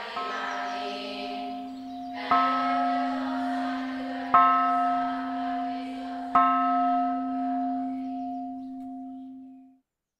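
A bell struck four times, about two seconds apart, each stroke ringing on under the next and the sound fading away near the end.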